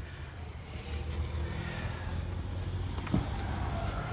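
Steady low mechanical rumble and hum, with one sharp click about three seconds in.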